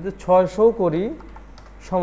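A voice speaking briefly, with several sharp computer keyboard key clicks mixed in.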